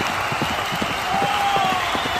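Racetrack crowd noise with the irregular thudding of hooves of horses racing past, and a few shouting voices rising out of the crowd about halfway through.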